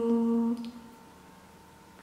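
A woman's unaccompanied voice holds a steady sung note that stops a little under a second in, leaving faint room tone.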